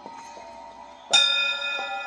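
Electronic score with a held tone, then about a second in a loud bell-like metallic strike rings out with several bright pitches and sustains, slowly fading.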